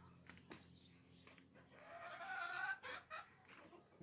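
A chicken calls once about two seconds in, a call of about a second that rises slightly in pitch, followed by a couple of short, sharp sounds.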